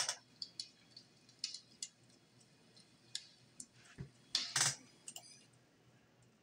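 Scattered light clicks and two short rustling bursts, the louder one about four and a half seconds in: handling noise from the camera being set up and a computer mouse being clicked at a desk.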